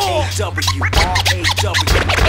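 Hip hop beat with turntable scratching over it: many short rising and falling pitch sweeps in quick succession above a steady bass line.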